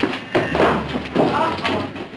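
Two loud bursts of voices laughing and exclaiming amid a brief scuffle, as someone is thrown and stumbles into the bar.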